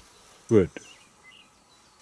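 One spoken word, then faint outdoor background with a short click and a few faint high chirps.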